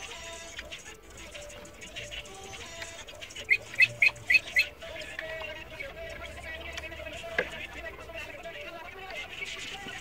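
A bird calls five quick, sharp notes in a row about halfway through. A single click comes a few seconds later, and faint background music plays throughout.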